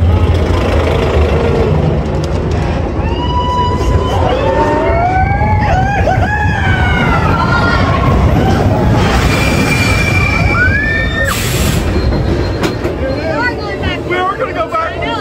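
Expedition Everest roller coaster train running along its track, heard from the front seat as a steady, loud low rumble. Drawn-out voices rise and fall over it through the middle, and there is a brief hiss a little after eleven seconds.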